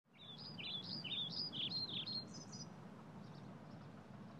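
A songbird singing one quick phrase of varied, rising and falling chirping notes, lasting about two and a half seconds, followed by a few faint notes over quiet, steady outdoor background noise.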